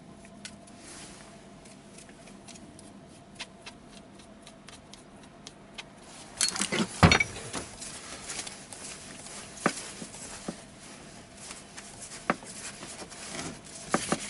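Light ticking of a brush dabbing marking compound onto a differential's ring gear teeth for a tooth-contact check. About halfway through comes a loud clatter of metal parts as the differential carrier housing is picked up and handled, followed by a few single clunks.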